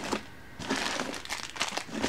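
Plastic packaging of loom-band packs crinkling as it is handled. The rapid, irregular crackling starts about half a second in.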